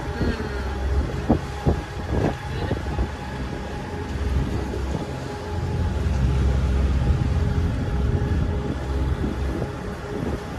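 Wind rumbling on the microphone aboard a moving catamaran, over a faint steady hum. The rumble swells about halfway through. A few sharp knocks come in the first couple of seconds.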